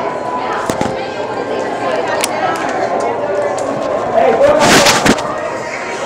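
Background crowd chatter, with knocks and rustling from a phone camera rubbing against clothing. A loud scraping rustle about four and a half seconds in.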